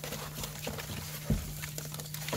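Paper-pulp egg cartons being lifted and shifted in a plastic cricket tub: light scraping and irregular small taps, with one louder knock a little past halfway.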